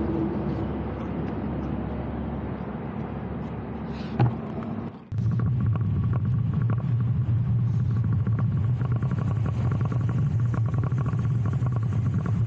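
Wind rumbling steadily on the camera microphone of a moving road bike, starting abruptly about five seconds in. Before it there is quieter steady background noise, broken by a single click just after four seconds.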